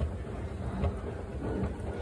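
Escalator running, a steady low rumble with a soft clack a little more than once a second as the steps pass.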